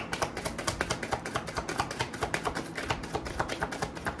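A deck of reading cards being shuffled by hand: a quick, steady run of small papery clicks, several a second.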